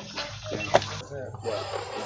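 Low background voices, with one sharp click about three-quarters of a second in.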